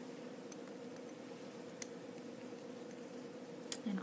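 Steady low electrical hum of lab equipment, with a few faint clicks from handling a plastic pipette and a broth culture tube, the sharpest near the end.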